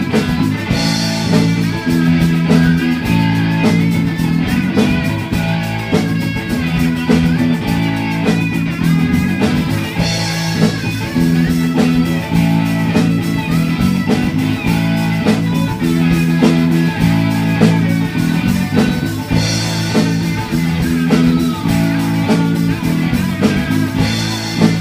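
Live blues-rock band playing an instrumental passage: electric guitars over bass guitar and drum kit, with no singing.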